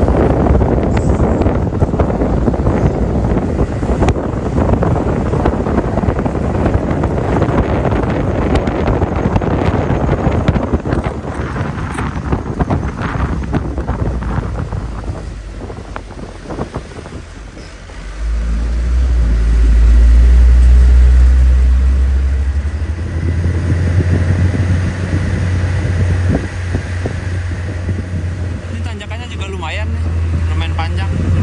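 Wind buffeting the microphone on the roof of a moving Isuzu Elf minibus, with the diesel engine running underneath. About 18 s in the wind eases and a deep engine drone comes up, loudest for a few seconds, then settles into a steady low hum.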